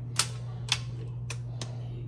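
Four sharp, uneven clicks as a hand handles a drip coffee maker and its power cord, over a steady low hum.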